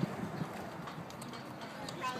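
Horses' hooves clip-clopping on asphalt at a walk, a few sharp hoof strikes standing out against the low background.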